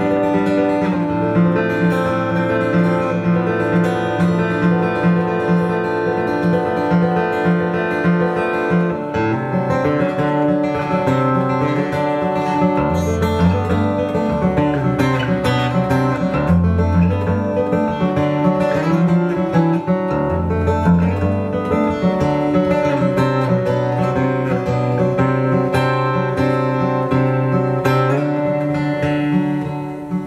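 Acoustic guitar played live, with sustained, ringing notes. Deeper bass notes come in from about halfway through.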